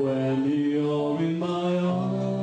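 Live band playing held chords in a slow romantic ballad, the notes moving to a new chord about a second and a half in.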